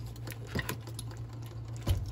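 Curry simmering in a pan, with scattered small bubbling pops over a steady low hum. A single sharp knock sounds near the end.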